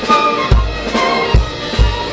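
A small orchestra plays: violins, cellos and double basses with a drum kit. Low drum hits sound three times over the sustained string tones.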